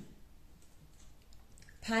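A near-quiet room with a few faint clicks during a pause, then a woman's voice starts again near the end.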